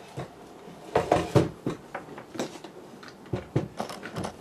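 Knocks and clatters of an IMG Stage Line MPX-204E DJ mixer's metal case being shifted and set down on a cloth-covered bench, with its power cable knocking about. The loudest knocks come just after a second in, with more near the end.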